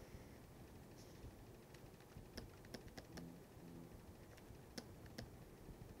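Near silence with about half a dozen faint, sharp clicks: a pen stylus tapping on a drawing tablet while writing.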